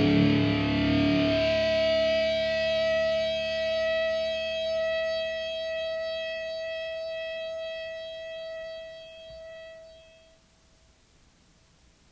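The ending of a heavy rock song: the band's last hit cuts off about a second and a half in, leaving one distorted electric guitar note ringing on and slowly fading away. It is gone by about ten seconds in, leaving only faint hiss.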